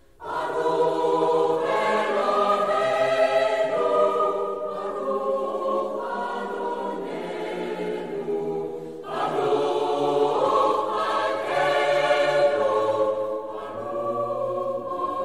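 Choral music: a choir singing long sustained chords. It comes in suddenly just after the start, eases off briefly about nine seconds in, then swells again.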